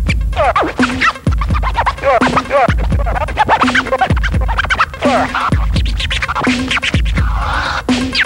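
Vinyl record scratched by hand on a turntable and cut with the mixer's crossfader: rapid rising and falling pitch squiggles, over a beat with a heavy bass kick about every second and a quarter.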